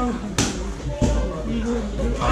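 Sharp smacks of Muay Thai strikes landing on gloves or body, a loud one about half a second in and a lighter one about a second in, over people talking.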